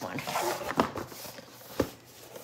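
Scissors cutting into the packing tape of a cardboard shipping box, with a sharp click near the end.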